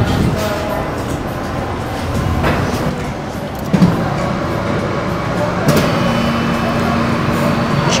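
Self-serve soft-serve ice cream machine dispensing into a cone. There is a click about four seconds in, then the machine's motor hums steadily from about six seconds on, over background voices and music.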